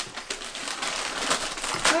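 Gift-wrapping paper crinkling and rustling as it is crumpled and handled, with irregular sharp crackles.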